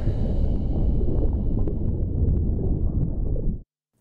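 Deep, rumbling sound effect under the animated show title, cutting off suddenly near the end into a brief silence.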